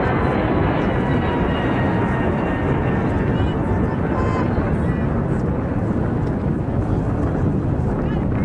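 An aircraft passing overhead: a loud, steady roar through the whole stretch, with faint voices under it.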